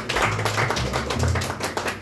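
A jazz trio starting a bossa nova groove: quick, even drum clicks and taps from the kit, with a few low upright double bass notes underneath.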